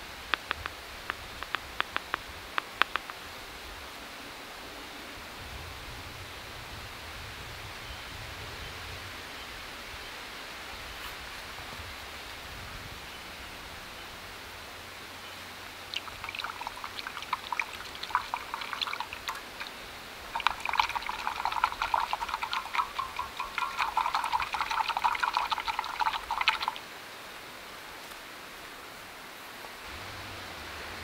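A metal spoon clinking and scraping around a stainless steel camp cup as cocoa powder is stirred into hot water. The stirring starts about halfway through, grows busier and stops a few seconds before the end. A few light taps come in the first three seconds.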